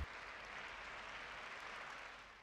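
Faint, steady applause from a sumo arena audience, heard as an even patter of clapping.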